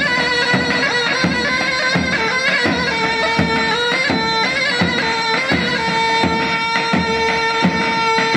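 Davul and zurna playing folk dance music: the shrill, reedy zurna holds long, ornamented notes over a steady davul drum beat, about one stroke every three-quarters of a second.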